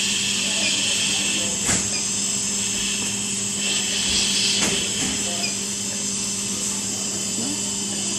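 Steady hiss of gas flowing from a CareFusion Infant Flow SiPAP driver and circuit, running in biphasic mode, over a low steady hum. Two short clicks come about three seconds apart.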